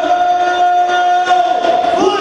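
A ring announcer's voice over the arena PA holding one long, steady vowel, the drawn-out call of a fighter's name.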